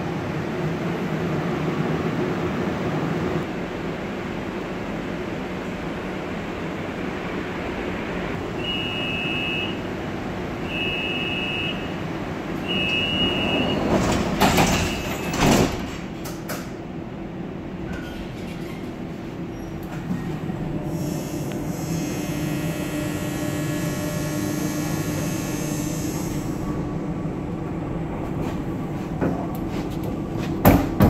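SkyTrain suspended monorail car standing with its doors open, its onboard equipment humming steadily. Three door-warning beeps, each about a second long and a second apart, are followed by the sliding doors closing with loud knocks. Later the drive gives a steady high whine as the car sets off.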